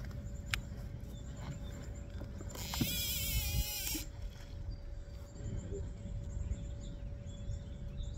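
A cast with a baitcasting reel. A short click comes first, then in the middle a loud, high whirring hiss lasting about a second and a half as the spool spins and line pays out, which cuts off abruptly when the spool stops. A low rumble of wind on the microphone runs underneath.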